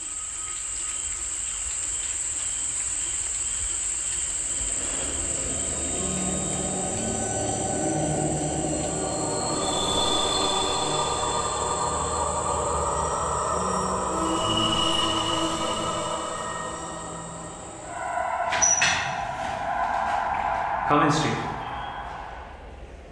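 Horror film score and sound design: a steady high thin whine under a dissonant drone that swells in from about five seconds in and grows louder, with several sharp hits near the end.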